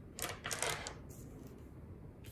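Tarot cards being slid and laid on a wooden tabletop: a brief flurry of sliding and tapping in the first second, then quiet handling.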